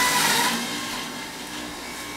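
Electric centrifugal juicer running as bok choy is pressed down the chute. The grinding is loud at first, then eases off about half a second in to a quieter steady running noise as the feed clears.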